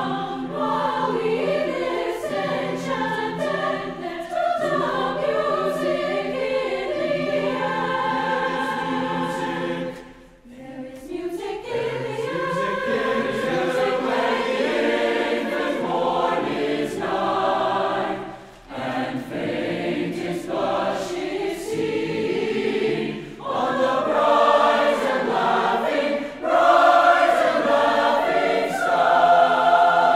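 Large mixed choir of men's and women's voices singing in parts, with a short break about ten seconds in and a brief dip near nineteen seconds, growing louder near the end.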